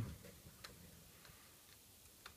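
Near silence with a few faint, sharp ticks, roughly two a second.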